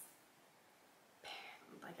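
Near silence: quiet room tone for about a second, then a soft intake of breath and quiet, half-whispered speech.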